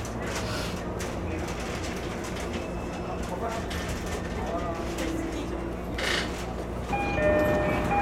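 Running noise of an E231-series electric commuter train heard from the cab end: a steady low rumble of wheels on rail, with faint voices. About a second before the end, a louder steady chord of several tones sets in.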